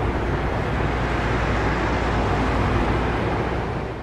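Car driving: a steady low rumble of engine and road noise that eases slightly near the end.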